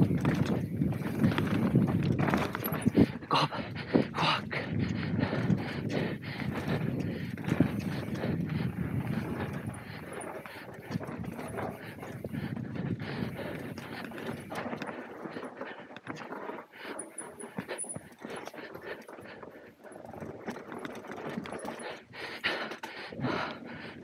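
Mountain bike descending a dirt race trail at speed: tyres on dirt and a frequent clatter and knocking of the bike over bumps, with wind rumbling on the camera microphone, heaviest in the first half. The rider breathes hard through the run.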